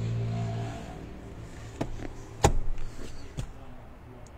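An electric seat motor in a 2022 Ford Expedition running with a steady hum that cuts off about a second in. Then come a few sharp clicks and knocks from the seat hardware, the loudest about halfway through.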